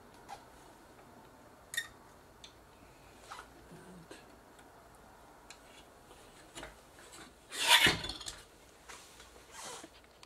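Handling noise from a large circuit board on a workbench: scattered small clicks and taps as a new capacitor is fitted, then a loud scraping rub about eight seconds in and a shorter one near the end as the board is lifted and turned over.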